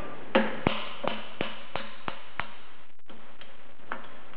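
Steel hammer tapping on a big offset screwdriver wedged between a Bridgeport variable-speed pulley's collar and its bearing, driving the two apart. About three blows a second; the first is the hardest and the later ones are lighter.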